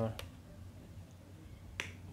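Two sharp clicks, one just after the start and one near the end; the second is a wall-socket switch being flipped off. In between there is quiet room tone.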